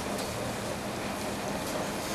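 Steady room noise, an even hiss with a low hum, with a few faint marker strokes on a whiteboard.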